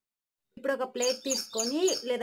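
A person's voice talking, starting suddenly about half a second in after a brief dead silence.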